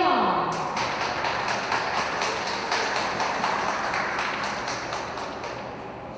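Audience applauding in an ice rink, a fizzing patter of many claps that slowly fades, after a brief falling tone at the start.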